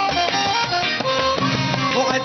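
Live Sudanese band music: an instrumental passage with a melody line over a steady percussion beat.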